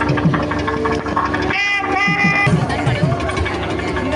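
Temple festival procession sound: crowd voices mixed with music, with repeated drum strokes and a held, bending melody note near the middle.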